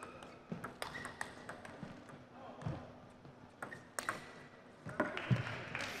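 Table tennis rally: the plastic ball struck by rubber-faced paddles and bouncing on the table, a series of sharp clicks about half a second to a second apart.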